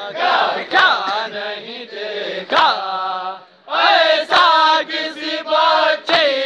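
Men reciting an Urdu noha lament in unison, amplified through horn loudspeakers, with sharp hand strikes of chest-beating (matam) landing about every two seconds, three times.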